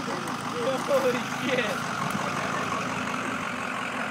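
Ford F-250 diesel pickup engine idling steadily, with faint voices in the background during the first couple of seconds.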